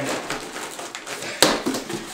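A cardboard shipping box being cut and pulled open by hand: continuous scraping and rustling of cardboard and packing tape, with one sharp snap about one and a half seconds in.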